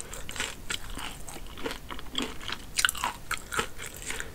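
Close-miked chewing of crispy fried chicken coated in honey and hot sauce, with irregular crunches of the breading.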